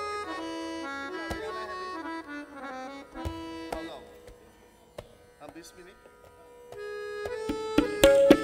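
Harmonium playing the lehra, the repeating melody behind a tabla solo, with only a few scattered tabla strokes. The melody fades almost away about halfway through and comes back near the end.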